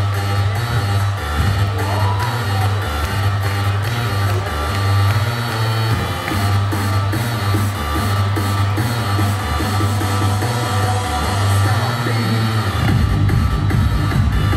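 Loud electronic dance music with a heavy, repeating bass line, played for a disco dance routine. About a second before the end, the bass shifts to a denser, driving beat.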